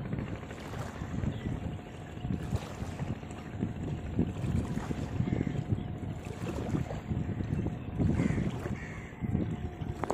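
Wind buffeting the microphone in an uneven low rumble, over a faint steady hum. A few faint, short high calls come through about halfway and near the end.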